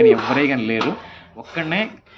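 A man speaking in short phrases, with a brief pause about a second in.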